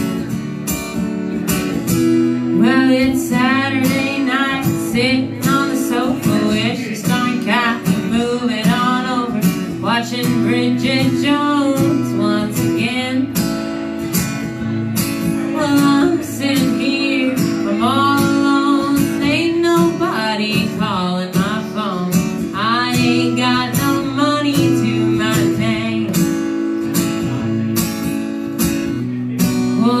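Country song played live on two acoustic guitars, strummed and picked, with a woman singing the melody over them.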